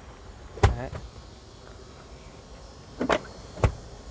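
Rear seatbacks of a Mercedes-Benz GLC 250 SUV being folded down flat into the cargo area, with two sharp thumps as they drop, one about half a second in and one near the end.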